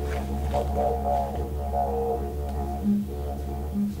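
Background music: a didgeridoo playing a steady low drone with wavering overtones.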